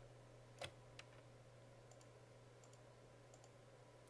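Computer mouse button clicks, a sharp one about half a second in and a smaller one at one second, then a few faint ticks, over near-silent room tone with a steady low hum.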